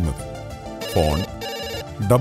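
Telephone ring sound effect: two short trilling rings, one right after the other, about a second in, over soft background music.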